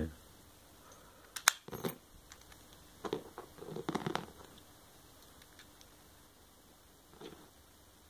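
Brass keys and small metal padlocks being handled: a sharp metallic click about one and a half seconds in, then a cluster of softer knocks and rustles around three to four seconds in, and one faint knock near the end.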